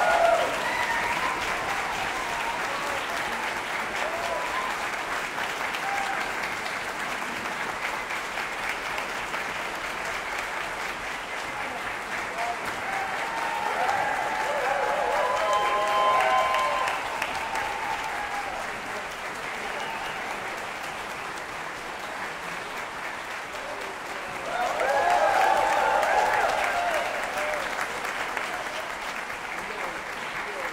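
Concert-hall audience applauding steadily after an orchestral performance. Cheering voices swell about halfway through and again near the end.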